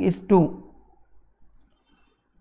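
A man speaks two words, then faint, sparse clicks of a pen stylus on a writing tablet.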